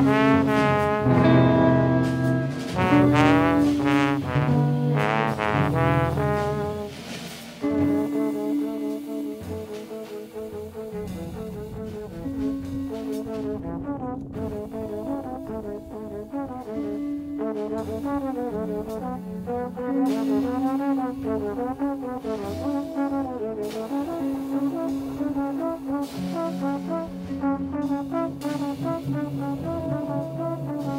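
Trombone playing a jazz melody with a wavering vibrato, backed by double bass, electric guitar and drums. Loud for about the first seven seconds, then the band drops to a much softer passage.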